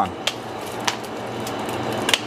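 Hand-held Texas nut sheller cracking wrapped Jolly Rancher hard candies in half: two short, sharp cracks, one about a quarter second in and one just before the one-second mark, over a steady low hum.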